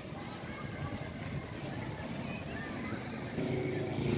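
A motor vehicle engine running with a steady low hum, growing louder near the end.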